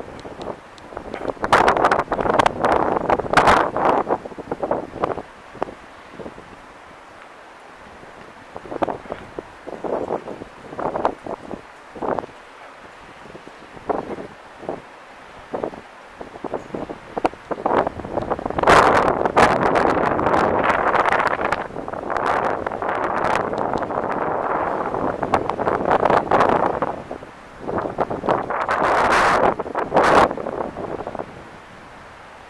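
Wind buffeting the camera microphone in irregular gusts: a rushing noise that swells loudly near the start, again through much of the second half and once more near the end, with quieter stretches between.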